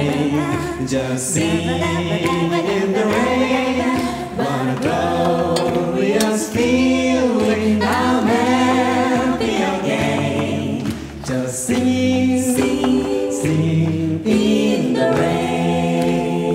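A chorus of men and women singing a slow song together in harmony through stage microphones, with short breaks between phrases.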